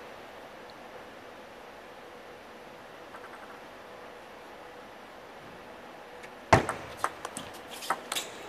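Table tennis rally: a ball struck by rubber-faced bats and bouncing on the table. It starts with one loud sharp click about six and a half seconds in, then a run of quicker, quieter clicks. Before it there is a low, steady hall hush.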